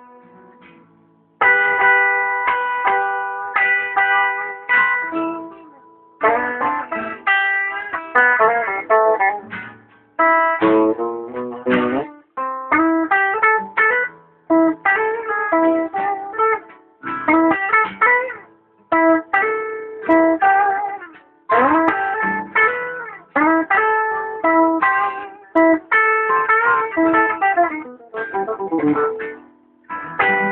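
A guitar played live: phrases of plucked notes and chords, each struck sharply and left to ring and fade before the next, with a short lull about a second in.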